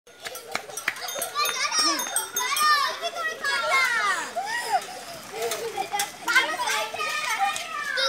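Children shouting and calling out excitedly during play, high-pitched voices rising and falling and overlapping, with a few sharp clicks among them.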